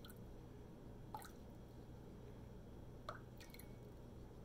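Near silence: room tone with a low steady hum and a few faint ticks, one about a second in and another about three seconds in.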